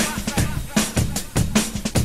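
Drum break in the music played for breakdancing: kick, snare and cymbal hits in a steady rhythm, with no other instruments.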